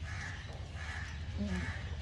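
Faint bird calls, about three of them, over a steady low hum; a man's voice begins near the end.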